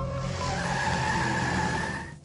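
Car tyre-screech sound effect: a long, high squeal that rises slightly in pitch over a hiss of tyre noise and a steady engine note.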